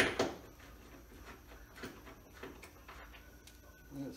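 A hand tool knocking on metal right at the start, then a few faint clicks as a wrench is worked on the car's lower frame bolts.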